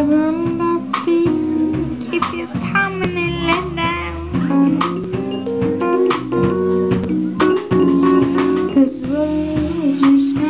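Live band playing a dance groove, with guitar and bass over a steady beat, no vocal line.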